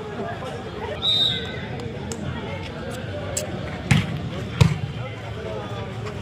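Spectators chattering around an outdoor volleyball court, with a brief high whistle about a second in. A volleyball is struck several times, the two loudest thuds a little under a second apart past the middle, as play restarts.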